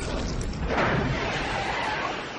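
Animated boxing sound effect for two punches landing at the same moment: a loud rushing, rumbling noise that swells about a second in and starts to fade near the end.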